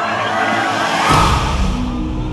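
Dramatised sound piece presented as the sound of a stoning: voices fade under a rising rush of noise that peaks about a second in, giving way to a deep rumble and a dark, sustained ambient music drone.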